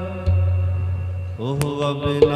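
Harmonium in Sikh kirtan holding a chord over a strong low note. About one and a half seconds in, a new phrase begins with a voice and a sharp tabla stroke.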